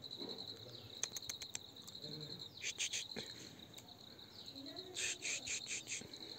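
Insects chirping in grass: a steady, rapidly pulsing high chirp, with two louder bursts of quick chirps, one about halfway through and one near the end.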